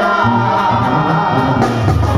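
Live Latin band music with several male singers singing together into microphones over bass and percussion.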